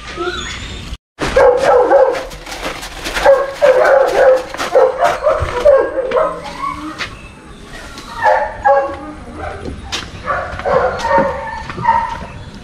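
A Rottweiler gives runs of short, repeated calls, in one burst over several seconds after a brief dropout about a second in, then again near the end, with sharp clicks among them.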